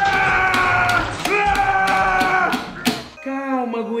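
A man giving two long, drawn-out yells, playing the part of an angry gorilla, while a plastic action figure is shaken and knocked against a tabletop with quick sharp clacks.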